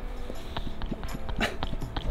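Rustling with a few scattered light clicks and crackles, as of a person shifting about on dry pine needles in a puffer jacket.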